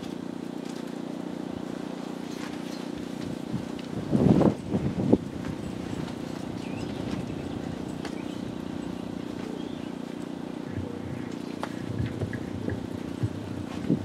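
A steady low hum under quiet open-air ambience, with a brief louder burst of sound about four seconds in.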